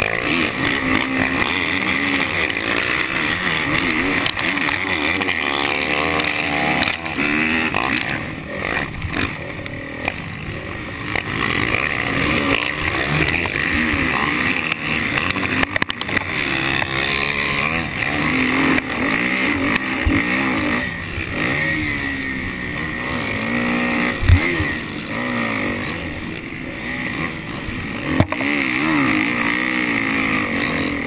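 Motocross bike engine heard from a camera on the bike, revving up and down with the throttle and gear changes while racing, with wind and dirt noise on the microphone. A sharp thump comes late on.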